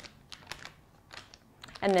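Disposable plastic decorating bag crinkling as its top is folded back up: a few soft, scattered ticks and crackles.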